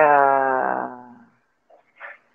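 A person's long, drawn-out voiced groan during an exercise effort, its pitch sinking slightly as it fades out over about a second and a half.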